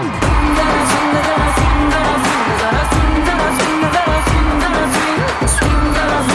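A pop song with a singer over a heavy, steady beat and hi-hats, coming in loudly right at the start.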